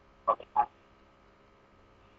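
Two very short vocal sounds from a person, like clipped syllables or a throat noise, within the first second. A faint steady hum follows.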